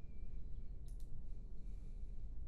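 Two quick computer mouse clicks about a second in, as an item is picked from a dropdown list, over a low steady hum.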